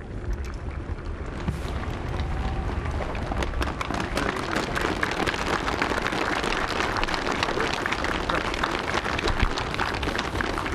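Audience applauding, the claps thickening from about three seconds in, over a low rumble.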